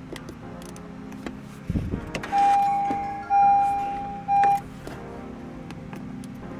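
An electronic chime sounds three times at one pitch, each tone ringing and fading, the third cut short, over quiet background music. A soft low thump comes just before the first chime.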